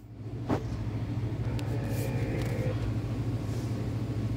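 A steady low rumbling hum over a light hiss, with a soft knock about half a second in.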